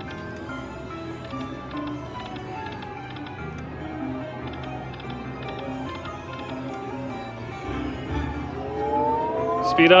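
Buffalo Gold slot machine spinning its reels, playing its run of short electronic notes and jingles as spins play out, over casino background din. Near the end a set of rising tones builds up.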